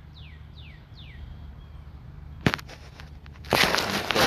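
A bird gives a few quick falling chirps in the first second or so. About halfway through there is one sharp click, and near the end a short rasping scrape, all over a steady low hum.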